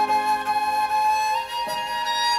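Chinese bamboo flute (dizi) playing a slow melody: a long held note that steps up a little in pitch about one and a half seconds in, over lower sustained accompaniment.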